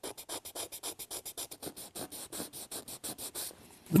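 Hand sanding of a carved wooden bird wing with a folded strip of fine sandpaper: quick, even back-and-forth strokes, about six a second, stopping shortly before the end.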